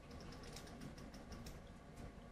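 Faint, rapid light clicks, several a second, over low room hiss.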